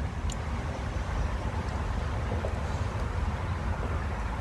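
A steady low rumble with a faint click about a third of a second in.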